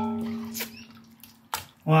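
Metal ladle striking a stainless steel stockpot, which rings with a clear tone that fades over about a second; two lighter knocks follow as soup is ladled out.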